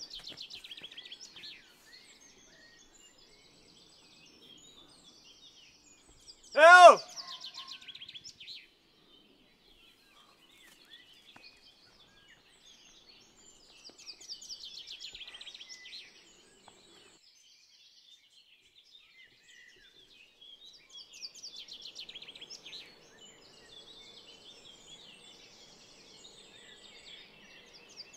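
Songbirds singing in short bursts of rapid high chirping every several seconds over a quiet background, with one brief, loud voiced cry about seven seconds in.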